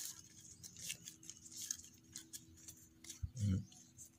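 Strips of fresh coconut palm leaf being folded and woven by hand, giving faint rustling with scattered small clicks. A short murmur from a voice comes about three and a half seconds in.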